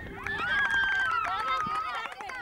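Children's voices shouting and calling out to each other during a game. One long high call is held for over a second, sliding slightly down.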